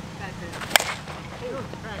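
Two-piece composite slowpitch softball bat (Miken Freak 23KP) striking a pitched softball: one sharp crack about three-quarters of a second in, with a brief ring after it.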